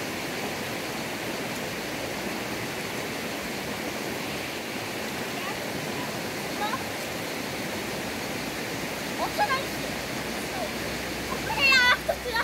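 Steady rushing of a fast-flowing river. Short high-pitched voices call out a couple of times, loudest near the end.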